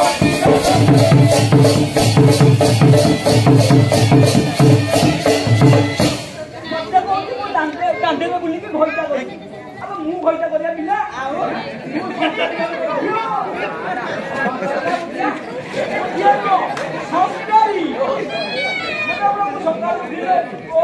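Live folk music: a barrel drum beaten in a steady rhythm, about three strokes a second, over sustained held tones. It stops abruptly about six seconds in. Voices talking take over for the rest.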